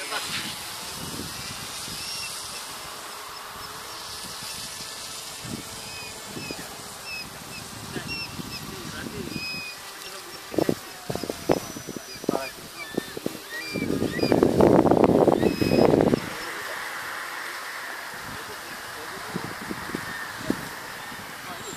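Faint buzz of distant electric RC model plane motors over open-air background, with short high chirps through the first half. A few sharp knocks come around ten to thirteen seconds in, and a louder burst of noise lasting about two seconds comes about fourteen seconds in.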